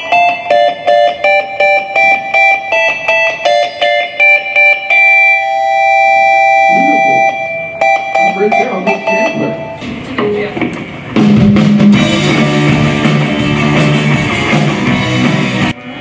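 Guitar picking a repeated run of single ringing notes, then the band coming in with drums and bass about ten seconds in, cut off abruptly just before the end: a rock band's soundcheck on stage.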